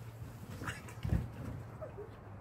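A dog's faint huffs and movement as it plays, with one soft low thump about halfway through over a steady low hum.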